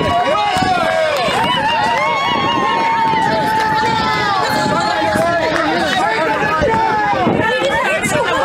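A crowd of many people shouting and yelling over one another with no let-up, too jumbled for single words to come through.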